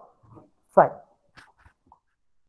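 A man's voice saying one short word, falling in pitch, followed by a few faint clicks.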